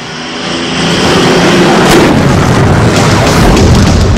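Movie-trailer sound design: a loud rumbling swell builds over the first second into a sustained dense roar with booming low end, mixed with some music.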